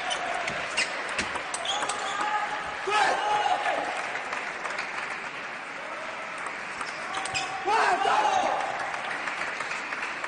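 Table tennis ball clicking rapidly off the rackets and table in a rally over the first couple of seconds, with a few more sharp clicks later. Voices shout out in the hall between points.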